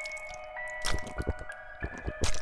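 Several wet squelching gore sound effects in quick succession, over a slow music-box melody of ringing notes.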